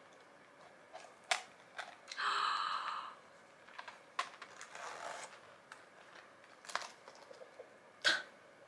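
Handling of a small zippered coated-canvas pouch with a phone pushed inside: scattered light clicks and rustles, with a short buzzing zip of the metal zipper about two seconds in.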